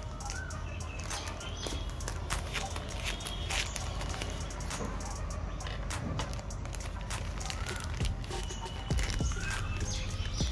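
Polythene courier mailer bag crinkling and rustling with many small crackles as it is handled and opened by hand.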